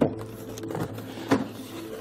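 Cardboard box being opened by hand: flaps scraping and rustling, with one short knock over a second in.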